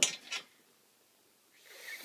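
A small child blowing at birthday candles: a short sharp puff at the start, then after a quiet pause a longer, soft, breathy blow near the end that does not put the candles out.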